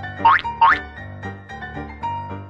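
Playful background music with a light, even beat, overlaid twice in quick succession by a loud, fast-rising whistle-like cartoon sound effect.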